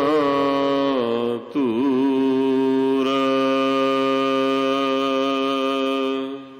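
Sikh Hukamnama recitation: a man's voice chanting a line of Gurbani, drawing one syllable out in long held notes. The pitch dips and wavers with a brief break about a second and a half in, then holds level for the last four seconds.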